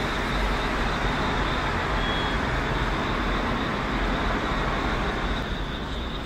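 Steady hum of road traffic from the street below, with no single vehicle standing out.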